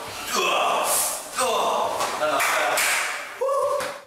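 A person's voice in short, breathy bursts that the recogniser did not catch as words, cutting off suddenly at the end.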